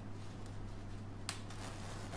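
Handling noise from a padded down gilet being adjusted at the collar and zip: faint rustling with one sharp click a little past halfway, over a low steady hum.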